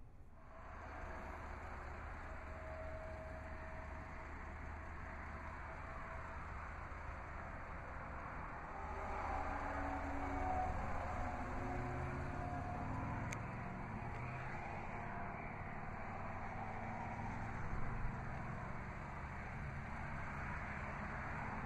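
Steady background noise of road traffic, a little louder from about nine seconds in.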